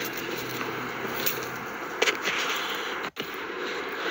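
Steady outdoor background noise with a few faint ticks and a low hum that fades out before the halfway point, cut off by a brief dropout to silence a little after three seconds in.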